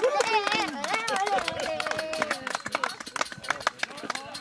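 People's voices calling out on a sports field, wavering and unworded, over a steady run of short sharp taps; the voices stop about two and a half seconds in while the taps go on.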